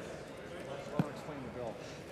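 A single sharp knock about a second in, over faint background voices in the chamber.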